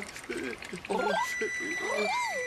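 A man's voice moaning "oh" three times in short, strained breaths, with a high steady tone of background music coming in just past a second in.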